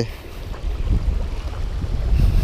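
Wind buffeting the microphone: a steady low rumble that grows a little stronger toward the end.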